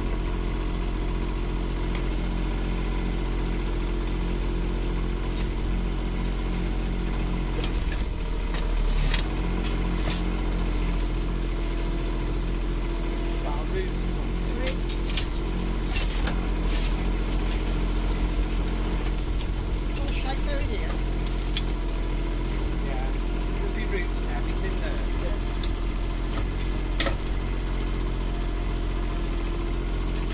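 Micro digger's diesel engine running steadily close by, with scattered knocks and scrapes as its bucket digs into soil and stones, loudest about nine seconds in.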